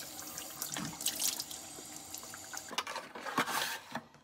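Water running from a bathroom sink tap into the basin, with splashes as hands scoop water onto the face. The water sound stops suddenly just before the end.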